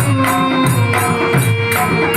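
Live Indian devotional music: a harmonium holds a steady melody note over a regular dholak beat, with evenly spaced high percussive strikes keeping time.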